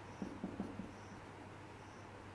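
Marker pen writing on a whiteboard, faint squeaks and short strokes as letters are drawn, most of them in the first second, over a low steady hum.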